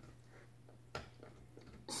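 Quiet room with a low steady hum and one small click about a second in, as a hand handles the magnetic darts stuck in a dartboard.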